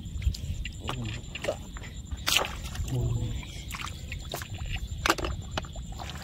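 Hands working through wet mud and shallow water, with a few sharp clicks, the loudest a little past two seconds in and again about five seconds in.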